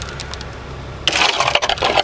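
Truck engine running, heard from inside the cab as a steady low rumble. About a second in, a loud rushing hiss joins it.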